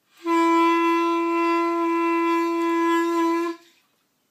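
A clarinet holding one steady note, the open G played with no keys pressed, for about three seconds before it stops cleanly. It is a beginner's first sustained tone on the instrument.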